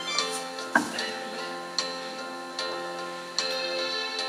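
Slow worship music on an electronic keyboard: sustained chords held under a light, regular tick a little more than once a second.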